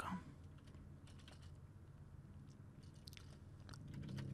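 Faint computer keyboard typing: scattered key clicks in small groups over a low steady hum.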